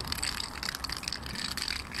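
A walking cane with its end tip come off, the bare end clicking and scraping on a tarmac pavement with a run of irregular crunchy ticks as it is walked on.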